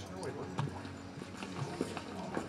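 Pub background ambience: a low murmur of indistinct voices with a few short knocks, like crockery or footsteps on a wooden floor.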